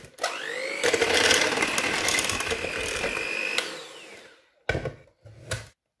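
AEG electric hand mixer switched on, its motor whining up to speed and running steadily for about three seconds as the beaters work flour into creamed butter, sugar and egg, then switched off and winding down. A couple of short knocks follow near the end.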